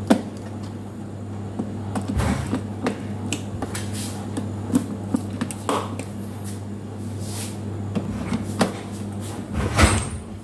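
Screwdriver clicking and scraping on the terminal screws of miniature circuit breakers in a distribution board as the connections are tightened, with scattered clicks throughout and a louder clatter near the end. A steady low hum runs underneath.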